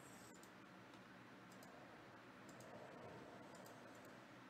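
Near silence with a few faint computer mouse clicks, scattered and irregular.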